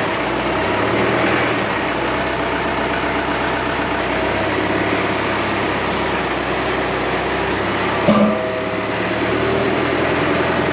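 John Deere loader tractor's diesel engine running steadily while it works its pallet forks and backs away, with a single metallic clunk about eight seconds in.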